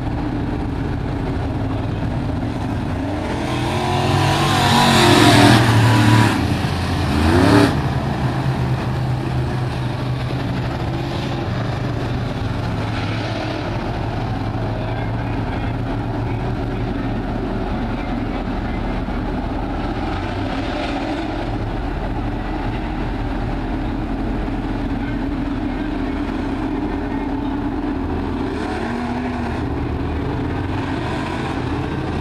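A pack of crate-engine dirt-track race cars running around the oval. The engine sound swells and is loudest as cars pass close about four to eight seconds in, then settles to a steady drone of engines further round the track.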